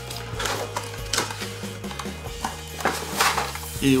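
Cardboard packaging of a wireless charging pad being opened and handled: several short clicks and scrapes as the box flaps and inner tray are worked loose, over background music.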